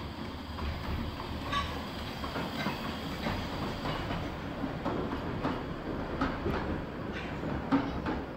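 Narrow-gauge train hauled by a Decauville 0-4-0 steam locomotive running on the track, over a steady low rumble. Its wheels click and knock irregularly over the rail joints, with a sharper knock near the end.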